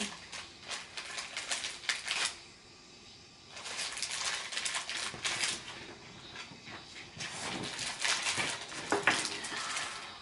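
Crinkling and rustling of plastic with many small clicks and taps, from an icing bag being squeezed and candies being handled, with a brief lull about two and a half seconds in.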